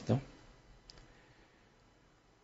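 A man's voice ends a short word, then near silence with one faint click about a second in.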